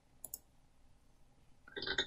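A computer mouse button clicking twice in quick succession, pressing play on an audio clip. A short, louder sound follows near the end as the recorded audio starts.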